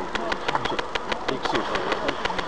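Low, indistinct voices talking inside a parked car's cabin, over a fast, even ticking of about ten clicks a second.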